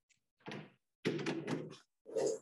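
Vertical sliding chalkboard panels being pushed up with a long pole: a short knock about half a second in, then a run of clattering knocks as the boards slide and bump into place.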